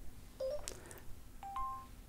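Xiaomi Mi 5 smartphone's charging chime, a lower note followed by a higher one, about a second and a half in, after a fainter short double tone and a click. The chime repeats because the phone keeps starting and stopping charging on a 1 A HTC charger that it doesn't like.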